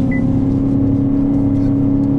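GMC Sierra 1500's 5.3-litre V8 under hard acceleration while towing a trailer up a steep grade, heard from inside the cab; the engine note climbs slowly as the truck gathers speed. A brief high beep sounds just after the start.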